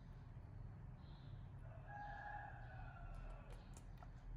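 A faint, drawn-out animal call about two seconds long, held on one pitch and then falling away, with a few faint clicks near the end.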